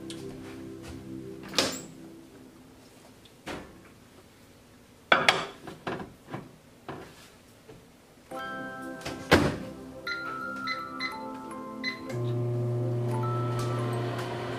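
Whirlpool microwave oven: a few sharp thunks of its door opening and shutting, then a quick run of keypad beeps, and from about two seconds before the end a steady low hum as it starts cooking.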